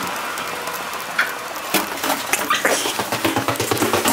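Footsteps and rustling of two people walking, with scattered irregular clicks that come thicker in the last second and a half.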